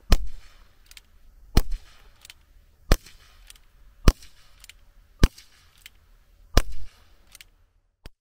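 Six shots from a gas-powered replica Colt Single Action Army air pistol firing .177 pellets, each a sharp crack, spaced a little over a second apart.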